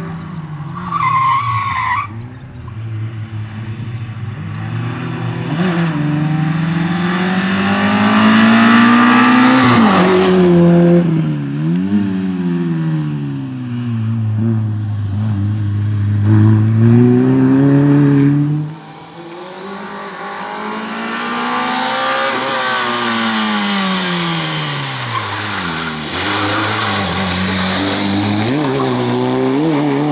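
Peugeot 106 rally car's four-cylinder engine revving hard through a tight cone slalom, its pitch climbing and falling again and again as it accelerates between gates and lifts off. A little past halfway it drops away sharply, then builds up once more.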